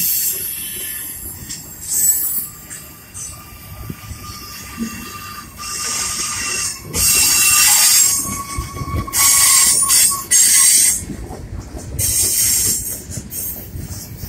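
Freight cars of a long manifest train rolling past close by, the wheels squealing and hissing against the rails in repeated surges as they take the curve, loudest in the middle, over a low rumble of wheels on track.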